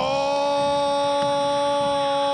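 A football commentator's long drawn-out shouted vowel, held on one steady pitch for about two and a half seconds as a cross drops into the goalmouth.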